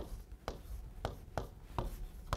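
Chalk striking and scraping on a chalkboard as letters are written, a series of short sharp taps about twice a second.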